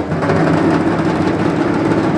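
Dhak drums played in a loud, unbroken roll over a dense crowd din, with no gaps between strokes.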